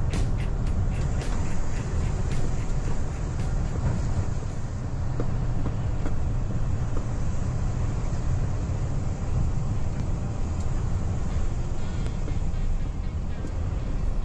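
Truck's engine running steadily as it drives, heard from inside the cab as a continuous low rumble. Background music plays over it, with a fast ticking beat in the first few seconds.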